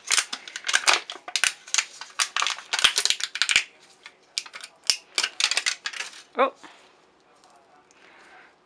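Thin disposable plastic cup crackling and crinkling as it is squeezed and peeled off a cured silicone mould: a dense run of sharp cracks for about three and a half seconds, then scattered cracks for a couple more seconds.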